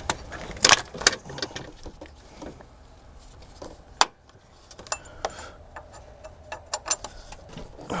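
Scattered light clicks and knocks of metal and hard plastic as a bolt is worked into alignment through a new engine mount bracket and the plastic coolant overflow reservoir is pushed aside by hand. The loudest clicks come about a second in, with a sharp single click at about four seconds.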